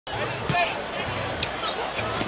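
A basketball bouncing on a hardwood court, with a sharp bounce about half a second in, over the steady noise of an arena crowd.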